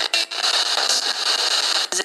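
Hiss of radio static from a handheld radio sweeping through the band, used as a ghost box and played through a small portable speaker. The static cuts out briefly near the start and again near the end as it skips between stations.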